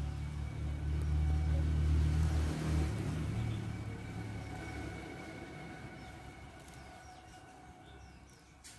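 Low engine rumble of a passing vehicle, loudest about two seconds in and then fading away.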